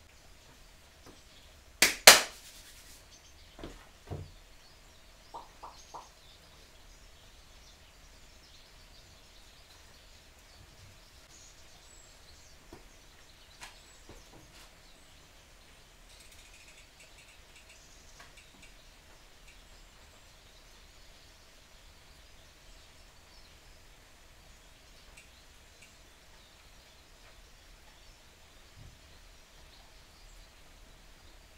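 Two sharp clacks in quick succession, then a few lighter knocks and taps over the next several seconds, from tools or parts being handled at a workbench. Otherwise quiet workshop room tone with a faint steady hum.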